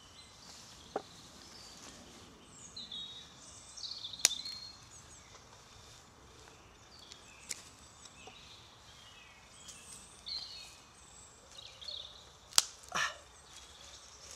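A knife working on a skinned rabbit on a wooden chopping stump gives a few sharp clicks, the loudest near the end, over a quiet background. Faint high bird chirps come and go in the background.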